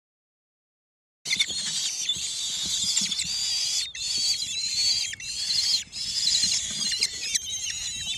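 Common kestrel nestlings giving shrill, overlapping begging calls at feeding time in the nest. The calls start abruptly about a second in and run on with two brief breaks.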